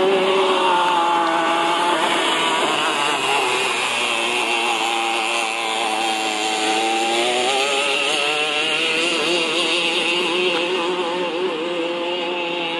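Go-kart engine running under changing throttle. Its pitch drops about two seconds in and climbs again after about seven seconds, as the kart slows and speeds up around the snowy track.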